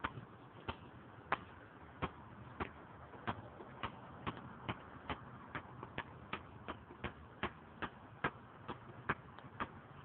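Basketball being dribbled on asphalt: a steady run of sharp bounces, about two a second.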